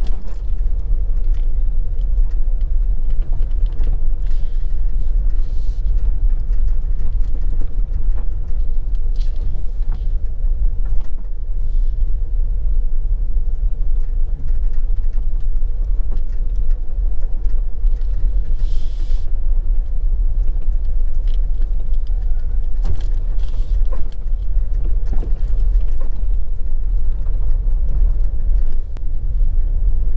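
Vehicle driving along a rough unpaved gravel road: a loud, steady low rumble of tyre and engine noise with a faint steady hum above it.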